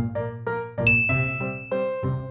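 Background music of plucked keyboard-like notes, with a bright chime-like ding about a second in that rings on briefly, marking the appearance of a chapter title card.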